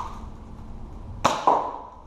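Spring-powered Dart Zone Powerball foam-ball blaster firing once with a sharp snap about a second in, followed a quarter second later by a second short knock.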